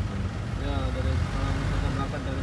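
Steady low road and engine rumble inside a moving shuttle vehicle, with voices talking over it.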